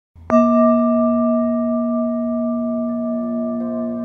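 A bell is struck once, about a third of a second in, and rings on, slowly fading. Soft notes of new-age music join near the end.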